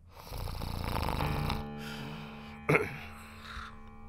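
A man snoring as he dozes in a chair: one long snore, then a shorter, sharper one nearly three seconds in, over soft background music.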